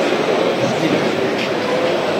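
Kuka Robocoaster industrial robot arm's drives running steadily as the arm swings its rider seat, over the continuous din of a crowded hall.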